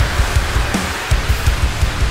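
A drum kit played hard along to a full-band rock track with guitars. Fast, repeated kick-drum hits sit under a constant wash of cymbals, with a short break in the low hits about halfway through.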